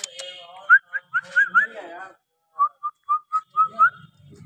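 A person whistling to call a dog: two runs of short, clear chirps, several of them sliding upward at the end.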